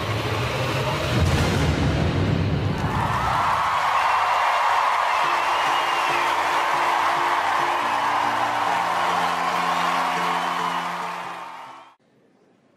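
Performance music with a heavy bass beat that gives way after about three seconds to an audience cheering and applauding, with whoops, over held chords; everything fades out near the end.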